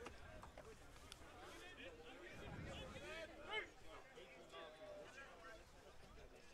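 Faint, distant voices of hockey players shouting and calling across an artificial pitch, with one louder call about three and a half seconds in.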